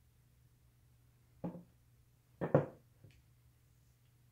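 A few short knocks as a painted panel is handled and set down in a plastic tub: one about a second and a half in, a louder double knock a second later, and a small tick after it. A faint steady low hum runs underneath.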